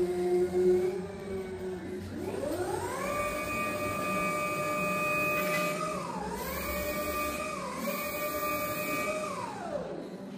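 Electric forklift motor whining: it spins up about two seconds in, holds a steady pitch with two brief dips, then winds down near the end.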